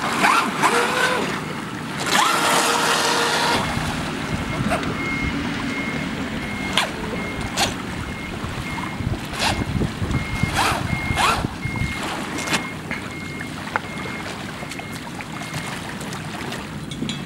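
Electric motor of a Sea Fire radio-controlled speedboat whining and rising in pitch as it throttles up in the shallows, then a series of short throttle bursts a second or two apart, with water splashing and wind on the microphone. A high electronic beep repeats steadily through the second half.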